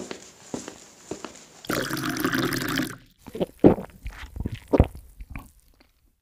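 Liquid pouring for about a second, followed by a few sharp knocks.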